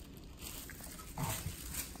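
A Shih Tzu gives one short bark a little over a second in, over the crisp rustle of thin paper that she is grabbing and pulling at with her mouth.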